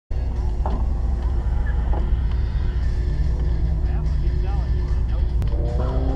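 1994 Camaro Z28's LT1 V8 idling with a steady low rumble, heard from inside the cabin; near the end the engine note climbs as it is revved for the launch.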